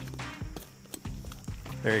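Soft background music with a few faint, short clicks and knocks from a saddle-hunting platform and its rope being handled as the platform is cammed over onto a tree.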